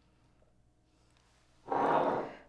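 Near silence, then near the end a ceramic serving bowl being turned on a stone countertop: a short scrape lasting under a second.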